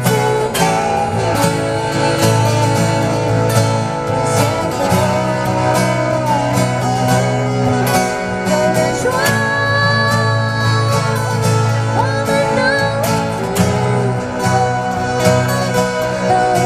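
Two acoustic guitars playing together live, with continuous picked and strummed accompaniment.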